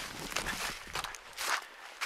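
Footsteps through dry grass and brush, a series of uneven steps with rustling of stems.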